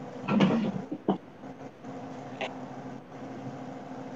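A brief muffled voice, then a steady low machine-like hum with a single click about two and a half seconds in.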